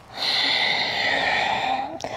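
One long audible ujjayi exhale through the nose, a steady breathy hiss from a slightly narrowed throat, lasting about a second and a half.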